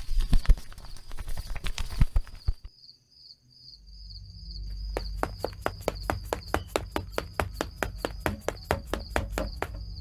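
Cartoon footsteps: an even patter of about four steps a second beginning about five seconds in, over a low rumble and a steady high cricket chirring. Before that come a few scattered knocks, then a brief near silence.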